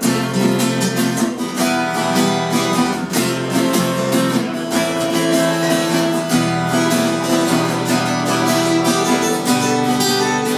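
Acoustic guitar strumming chords in an instrumental passage with no singing, striking up right at the start.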